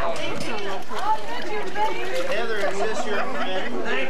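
Several people talking at once, an indistinct overlapping chatter of voices.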